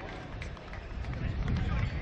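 Indistinct chatter of spectators' voices over a steady low rumble of wind on the microphone.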